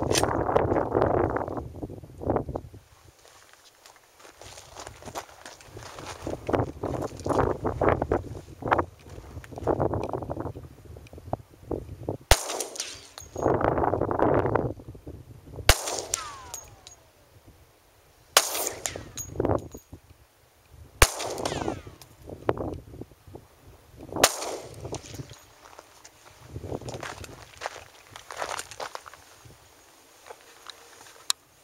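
Glock 20 10mm Auto pistol firing 180-grain SureFire factory range loads: five single shots, one every two and a half to three and a half seconds, in the second half. Gusting noise fills the gaps between shots.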